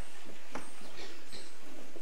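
Several sharp, dry knocks at an irregular pace of about two a second, with no sustained instrument tones under them.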